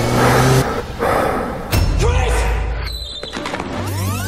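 Movie-trailer sound mix: the music breaks off early and gives way to bursts of rushing noise, with a sharp hit a little before halfway.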